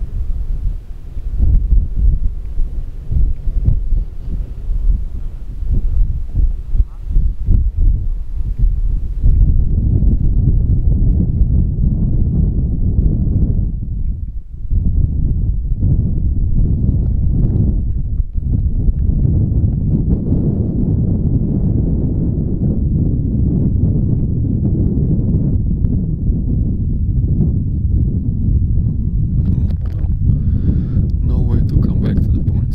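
Strong, gusty wind buffeting the microphone: a loud, uneven low rumble that swells and dips, with a faint hiss on top for the first nine seconds or so.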